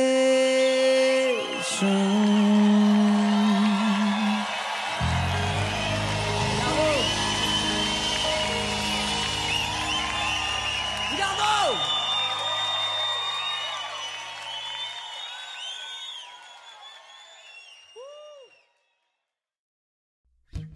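The closing of a live acoustic rock song: a long held sung note, then a final sustained band chord, with the audience cheering and whooping as the sound fades out to silence shortly before the end.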